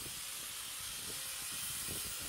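Handheld power tool worked against a brick wall, heard as a steady high hiss.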